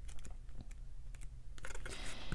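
Paper guidebook being handled and leafed through: a run of light clicks and flicks of paper pages, coming closer together near the end.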